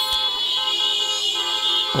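Car horns honking in a long, steady blare, drivers sounding them in celebration.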